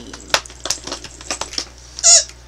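Cardboard advent calendar and its plastic tray being handled as a door is opened and a chocolate is taken out: irregular sharp clicks and crackles.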